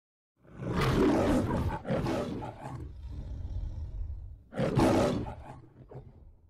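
The MGM logo's lion roaring: two loud roars starting about half a second in, a lower growl, then a third roar near the end that fades away.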